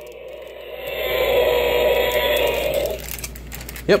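Electronic roar from a battery-powered toy Tyrannosaurus rex, played through its small built-in speaker. It swells to its loudest near the middle and dies away about three seconds in, showing the toy's sound feature still works.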